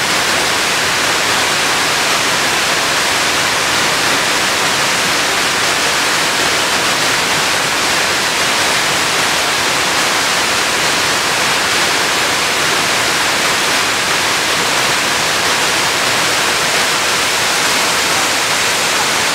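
A multi-tiered waterfall pouring over stepped rock terraces, a loud, steady rush of water with no change in level.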